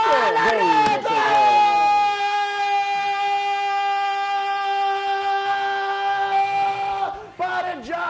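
Men yelling in celebration of a goal. After a burst of excited overlapping shouts, one voice holds a single long, high yell for about six seconds, and the shouting starts up again near the end.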